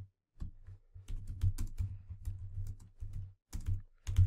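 Typing on a computer keyboard: a fast, uneven run of keystrokes starting about half a second in.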